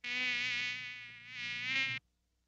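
Cartoon housefly buzzing: a steady, slightly wavering buzz that starts suddenly, fades down about halfway, swells again and cuts off.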